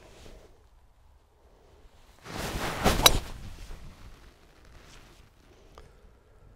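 Golf club striking a ball: a short rush of noise builds to a single sharp crack at impact about three seconds in.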